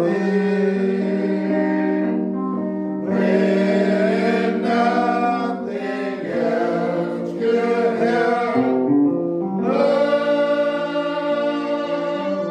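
Gospel choir singing, several voices holding long sustained notes that change every second or two.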